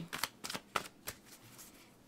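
A deck of Angel Tarot cards being shuffled by hand: a few short, quick card snaps in the first second or so.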